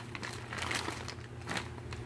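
Clear plastic parts bag holding metal tube adapters, crinkling as it is handled in a hand.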